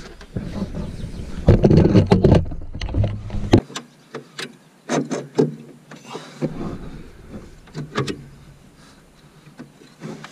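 Scattered sharp clicks and light metal knocks of hand work at a clutch pedal under the dash, fitting the clevis pin and retaining clip that join the new clutch master cylinder's pushrod to the pedal. A heavy rumble of body movement and handling runs through the first three and a half seconds.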